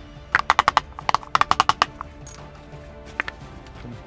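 Small hammer tapping rapidly on a wooden drawer, seating glued oak lining strips: three quick runs of light taps in the first two seconds, then a single tap about three seconds in.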